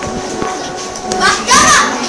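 Speech: a child's voice calls out loudly about a second and a half in, over a steady background hum and room noise.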